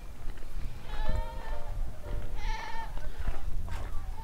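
A goat bleating twice, about a second in and again at about two and a half seconds, over background music.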